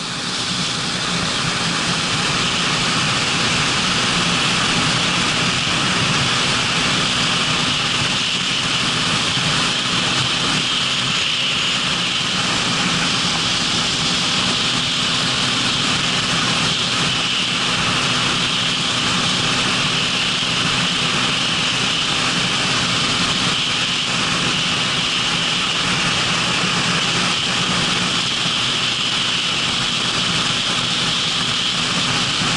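Motorcycle engine running steadily at cruising speed, with wind rushing over the microphone of a camera mounted on the bike.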